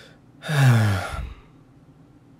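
A person's long, breathy sigh, falling in pitch, about half a second in.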